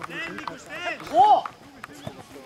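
Voices calling out on a football pitch during play, short shouts with one loud call a little over a second in.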